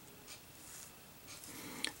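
Faint rustling handling noise of a small circuit board held in the hands, with one small sharp click near the end.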